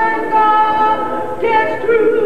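Unaccompanied singing of a church song, a woman's voice holding long notes that step to a new pitch about a second and a half in.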